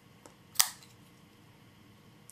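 Spyderco folding knife flicked open: one sharp metallic click about half a second in as the blade swings out and locks, with a faint tick just before it.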